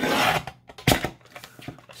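Fiskars paper trimmer cutting through the edge of a paper envelope: a half-second rasp as the blade runs along the edge, then a single sharp click just under a second in.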